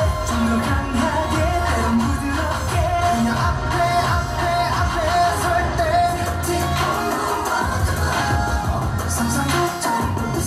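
Korean pop song playing loudly with sung vocals over a steady beat, briefly dropping away just before the end.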